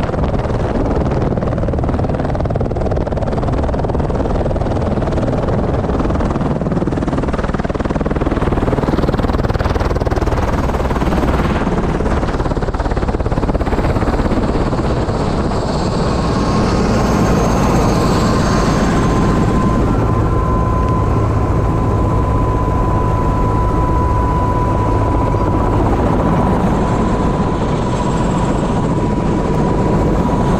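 Airbus H125 helicopter running on the ground, main rotor turning, its turbine and rotor sound loud and steady, heard close to the machine. A steady high whine comes in about halfway through.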